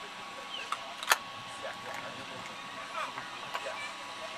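Faint distant voices over open-air ambience, with a faint steady hum and a single sharp knock about a second in.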